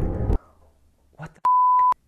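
A censor bleep: one steady, high, pure beep about half a second long, blanking out a swear word just after a short spoken "What". Before it, music and speech cut off abruptly.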